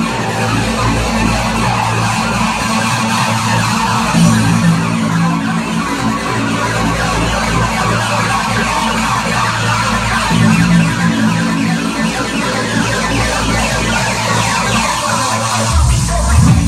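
Loud electronic dance music from a live DJ set played over a venue sound system, with held bass notes changing every few seconds under a hissing wash of higher sound.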